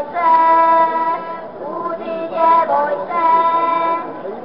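A group of children singing together, holding long, steady notes in three short phrases with brief breaths between them.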